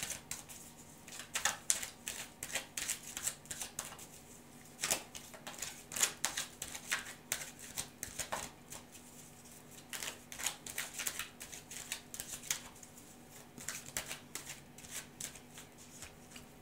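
A deck of tarot cards being shuffled by hand: a quick, irregular run of soft card flicks and slaps.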